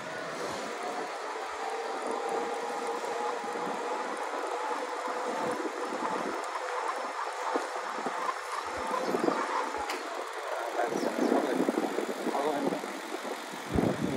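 Yamaha YPJ-TC electric-assist bike being ridden: a steady whine from its assist motor over road and wind noise, the whine fading after about nine seconds. The noise grows rougher and louder in the last few seconds.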